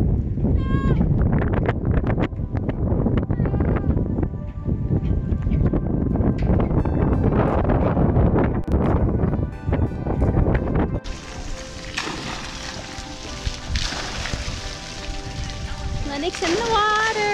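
Wind rumbling on the microphone with music behind it. About eleven seconds in, the sound cuts to a quieter recording with music still playing.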